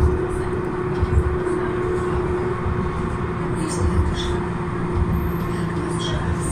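Tram running at steady speed, heard from inside the car: a steady electric hum over a continuous rolling rumble from the wheels on the rails, with occasional low thumps.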